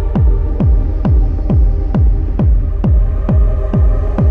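Dark techno: a steady kick drum, each hit dropping in pitch, a little over two beats a second, under a sustained droning synth.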